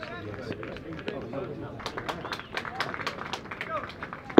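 Faint, indistinct voices of players and spectators at a baseball field, with scattered short sharp clicks or claps.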